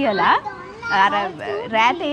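Speech: a woman talking animatedly, with a high voice sweeping down in pitch right at the start.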